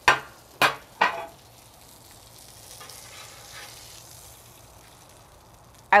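Bacon and eggs sizzling steadily on a Blackstone flat-top griddle. Three sharp clacks come in the first second.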